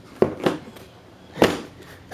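Seat of a Yamaha YFZ450 quad being pressed down into place by hand: three sharp knocks of the seat against the plastic body.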